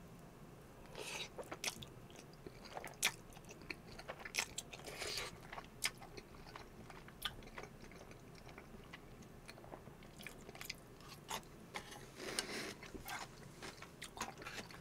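Close-miked chewing of cream truffle pasta noodles: many short mouth clicks and smacks, with a few longer, softer sounds about a second in, around five seconds and near the end.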